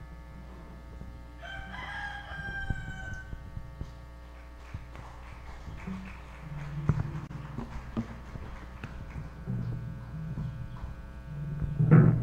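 A rooster crowing once, a call of about two seconds that falls slightly in pitch at its end, over a steady mains hum from the sound system. Scattered knocks and bumps follow later.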